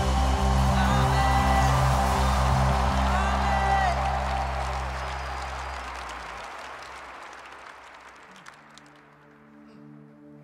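Live worship band music with sustained low bass and keyboard chords under crowd cheering, fading out gradually over several seconds. A soft keyboard pad comes back in near the end.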